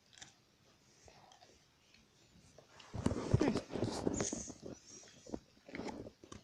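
A person chewing a soft sweet close to the microphone: irregular wet mouth clicks and chewing noises that start about halfway through and go on for a couple of seconds.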